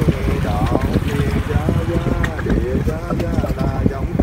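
A voice chanting Buddhist liturgy in Vietnamese in a sing-song way, with syllables drawn out and held. Wind buffets the microphone throughout.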